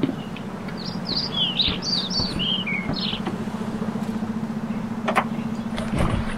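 A small bird singing one phrase of short whistled notes that step down in pitch, over a steady low hum, with a sharp click about five seconds in.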